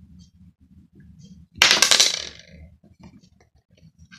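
A tossed five pence coin landing on a hard surface and rattling for about half a second, about one and a half seconds in.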